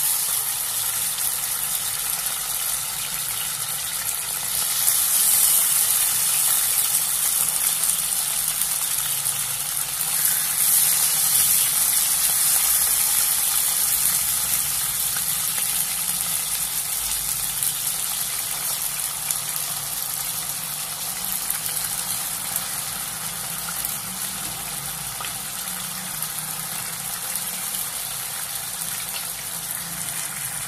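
Slices of raw pork sizzling in hot oil in a frying pan, a steady hiss that is loudest in the first half as the pan fills with meat.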